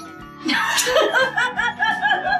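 Laughter breaks out about half a second in, a run of quick, high-pitched ha-ha pulses, over light background music.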